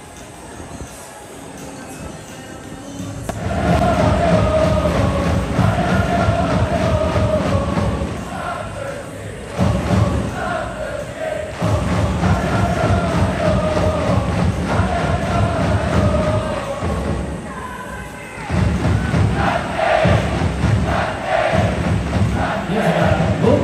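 A football supporters' section chanting in unison to a steady pounding drum beat. The chant starts loudly about three seconds in and breaks off briefly twice before starting up again.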